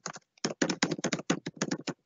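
Typing on a computer keyboard: a quick, uneven run of key clicks, about eight to ten a second, starting about half a second in.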